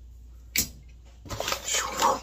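A single sharp click about half a second in, then a soft knock, as a snack packet is handled and picked up; a voice begins near the end.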